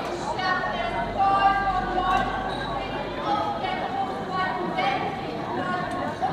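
A single voice in drawn-out phrases over the murmur of an outdoor crowd.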